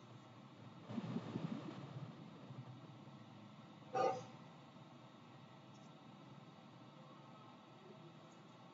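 Mostly quiet room tone, with faint irregular low noise for about a second and a half starting about a second in, and one brief short sound near the middle.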